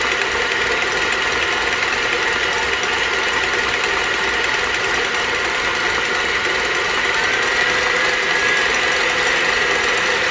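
KitchenAid stand mixer running steadily, its wire whip beating frothy egg whites with sugar and cornstarch in a stainless steel bowl. The motor gives an even, high whine.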